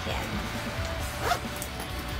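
Zipper on a Michael Kors Abbey backpack's inner pocket being pulled in two quick strokes, one at the start and one a little past the middle, over background music.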